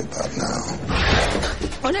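A monster's harsh, noisy roar, a film sound effect, starts about a second in and lasts nearly a second. A shouting voice follows near the end.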